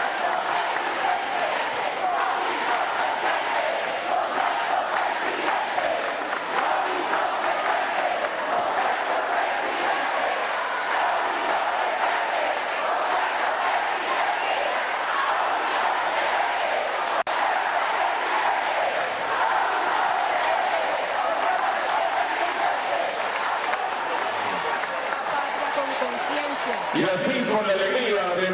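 Large crowd in a theatre hall cheering and shouting: a loud, steady din of many voices at once. A single voice starts speaking near the end.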